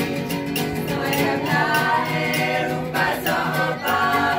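A group of voices singing a song together, with a steady beat behind them.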